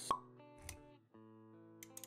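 A sharp pop sound effect right at the start, over background music of held synth-like notes. A short low thump follows, and the music briefly drops out before carrying on.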